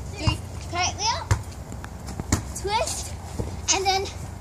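Young girls' voices calling out in short, high, gliding calls while they play. Three short thumps fall about a third of a second, a second and a quarter, and two and a quarter seconds in.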